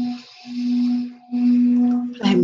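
Singing bowl being rimmed with a wooden stick, giving a steady sustained hum with the rub of the stick along the rim heard above it. The tone dips away briefly twice as the stick circles.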